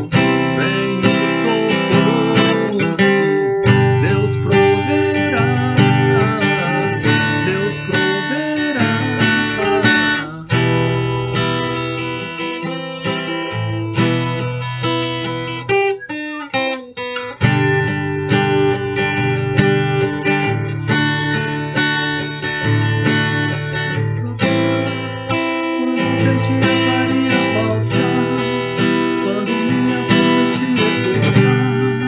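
Steel-string acoustic guitar strummed steadily through a minor-key chord progression that moves between E minor and A minor seventh, among others, with a brief break in the strumming about halfway through.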